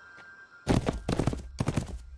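Horse hooves galloping: a quick run of heavy thuds that starts under a second in, from the anime's sound effects.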